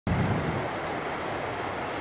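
Steady rush of ocean surf breaking on the shore, with a deeper rumble in the first half-second.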